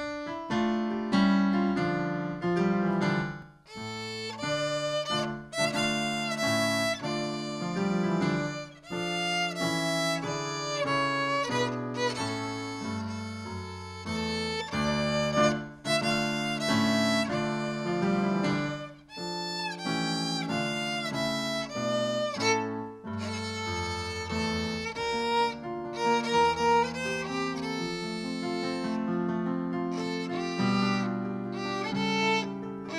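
A young student bowing a melody on the violin, accompanied by chords on an electric keyboard.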